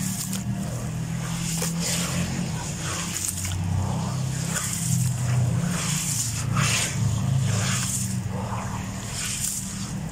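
Handfuls of wet grainy sand crumbling and falling into water in a basin, gritty splashes and trickles coming roughly once a second, then hands squishing the wet sand. A steady low hum runs underneath.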